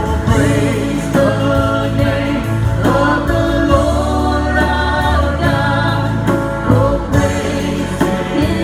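Live worship band playing: voices singing held notes over acoustic guitar, keyboard, bass and drums, heard from the audience in a reverberant hall.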